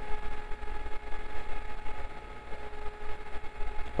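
Small 12-volt DC cooling fan running with a steady hum, switched on by the Arduino through a relay because the heated thermistor has pushed the reading past its threshold.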